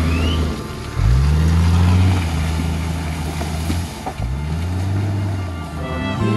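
A 4x4's engine revving hard while the vehicle drives through deep mud. It climbs in pitch and holds twice, once about a second in and again about four seconds in.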